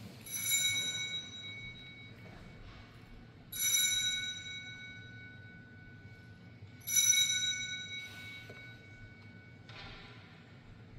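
Altar bell rung three times, about three seconds apart, each ring bright and high and fading away slowly; it marks the elevation of the consecrated host at Mass.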